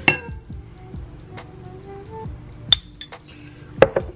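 Spoon clinking against a glass jar of chilli oil: a handful of sharp clinks, the first ringing briefly, two close together after about two and a half seconds and one more near the end. Soft background music runs underneath.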